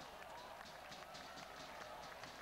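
Faint, steady ambience of a small football ground: distant voices of spectators and players carrying across the pitch.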